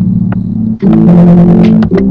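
Acoustic guitar strummed loudly close to the microphone, chords ringing, with fresh strums about a second in and again near the end.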